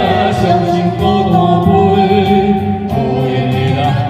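A woman and a man singing a duet through handheld microphones over a karaoke backing track, holding long sung notes.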